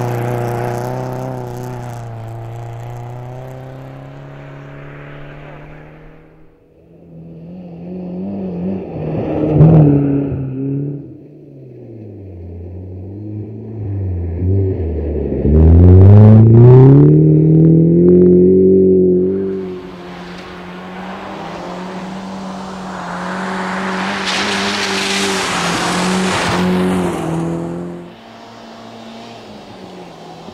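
BMW E36 Compact rally car's engine revving hard through corners on snow and ice, over several separate passes. The revs fall off as it slows for a bend, then climb sharply again on the throttle, and the sound is loudest where the car passes close.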